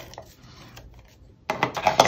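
Faint scraping of an adhesive applicator rubbed along a strip of paper on cardstock, with a few light ticks. It stops about a second and a half in.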